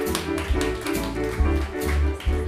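A live band playing an instrumental passage: electric guitars, keyboard, bass and drums. Short repeated chord stabs ride over a steady drum beat and a bass line.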